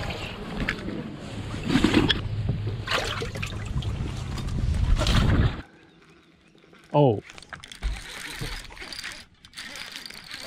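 Loud rushing noise with a deep rumble and gusts, with water sloshing. It cuts off abruptly about five and a half seconds in, leaving quiet with one brief falling-pitched sound about seven seconds in.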